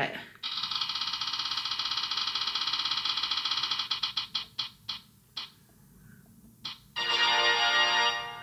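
A phone wheel-spinner app's ticking sound effect: a fast run of pitched ticks that slows to a few separate ticks as the wheel comes to rest. About a second before the end, a brighter pitched result sound starts.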